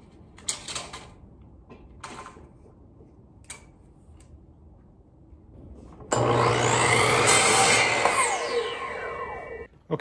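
A few light knocks as a 2x4 is set on a miter saw. About six seconds in the saw's motor starts suddenly and winds up in pitch, cuts through the 2x4, then winds down and stops just before the end.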